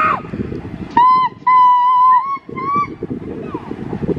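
Steam locomotive whistle sounding across the valley in three blasts, short, long, short, each on one steady high pitch that rises slightly as it starts.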